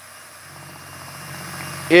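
Cordless drill spinning a mixing paddle in a small cup of epoxy at low speed: a faint, steady motor hum that slowly grows louder.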